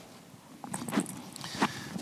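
Handling noise as a laptop is moved and turned around: a few light knocks and clicks with some rustling.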